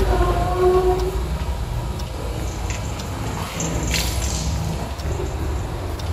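A steady low rumble, with a few short held tones in the first second and a brief hiss about four seconds in.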